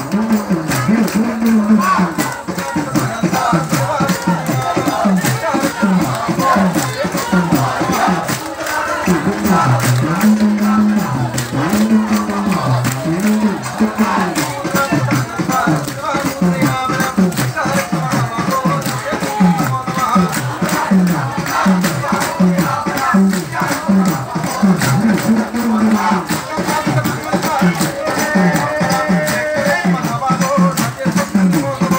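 Akhanda namam devotional chanting: a crowd of men's voices chanting a short phrase in unison, over and over, with a steady rattling percussion beat.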